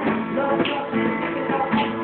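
Acoustic guitars strumming with a violin playing a melody over them, an informal live acoustic pop jam.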